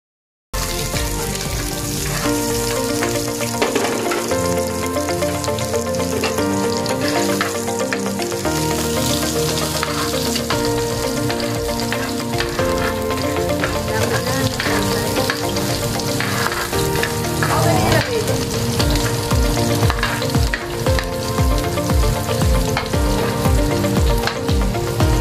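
Onions, ginger and garlic sizzling in hot oil in a frying pan, stirred with a metal ladle. The sound starts suddenly about half a second in, with background music underneath that takes on a steady beat in the second half.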